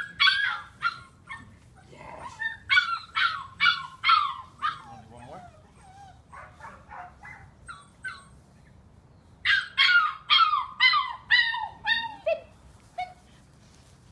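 An eight-week-old Australian Shepherd puppy giving high, short yipping barks while held back on a leash: a couple at the start, a run of about five a few seconds in, and a longer run of about seven near the end, with fainter whines between the runs.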